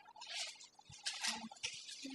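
Pages of a Bible being leafed through: several short, soft papery rustles in quick succession as the passage is found.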